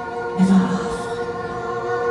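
Live band music: a sustained, steady chord held under several voices singing, with a short louder sung note about half a second in.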